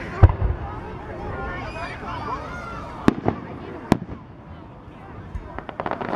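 Aerial fireworks shells going off: a loud bang with a low thud near the start, bangs around three and four seconds in, and a quick run of crackling pops near the end.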